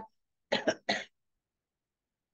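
A woman clearing her throat in three short coughs in quick succession, about half a second in.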